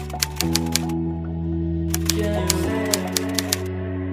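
Typewriter key-click sound effect rattling off in two quick runs, one in the first second and another from about two seconds in, the effect that goes with on-screen text being typed out. Under it, background music of sustained chords that change twice.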